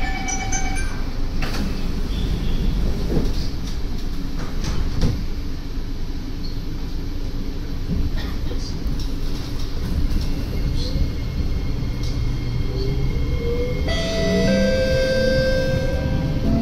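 Interior sound of a Kawasaki–Nippon Sharyo C751B metro train running: a steady low rumble of wheels on track with occasional knocks. Near the end the traction motors' whine rises in pitch as the train picks up speed.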